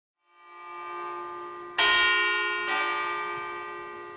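A bell tolling to mark three o'clock. The ringing swells in from silence, then a loud stroke comes about two seconds in and rings on, slowly dying away.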